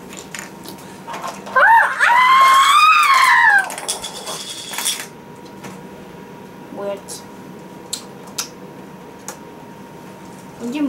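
A high-pitched child's voice squealing, rising and then falling over about two seconds, the loudest sound here. It is followed by several light clicks and clinks of plastic LEGO bricks being handled.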